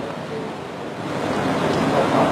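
A steady rushing background noise, like wind or surf, that grows a little louder in the second half.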